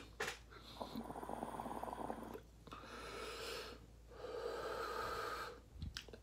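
A hit drawn through a water-filled electric dab rig with a quartz atomizer bucket: the water bubbles rapidly for about a second and a half, followed by two long breaths.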